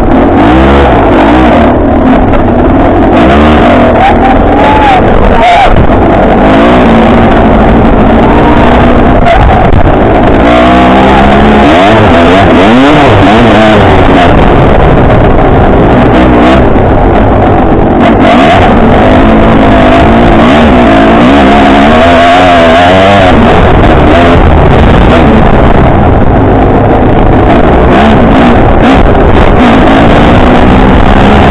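Off-road dirt bike engine heard from on board, loud and close, its pitch rising and falling again and again as the throttle is opened and closed on a trail ride.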